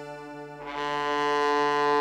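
Bowed dulcimer sounding one long sustained note, swelling louder about two-thirds of a second in.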